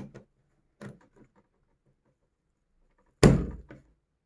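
A mains plug pushed into a power-strip socket: one loud clack about three seconds in, followed by a smaller click, with a few faint clicks of handling before it.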